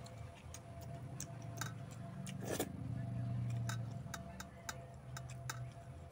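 Close-up mouth sounds of a man chewing a mouthful of rice and fish curry: an irregular run of wet smacking clicks. About halfway through comes a brief louder sound, then a low murmur from his throat.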